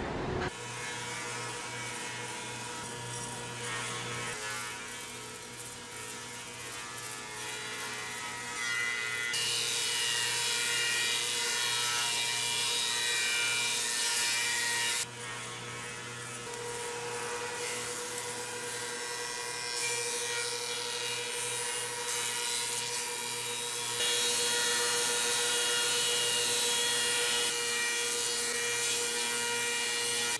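Factory machinery on a particleboard production line running steadily: a constant hum under a hiss. The hiss jumps louder about a third of the way in, drops back about halfway, and is louder again for the last few seconds.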